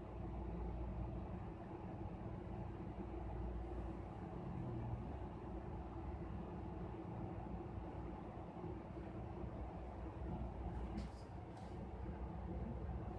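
Low, steady background rumble with no speech, and two short hissing sounds near the end.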